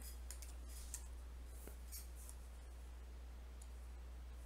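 Faint, scattered clicks from a stylus or mouse as on-screen writing is selected and erased, mostly in the first two seconds, over a steady low hum.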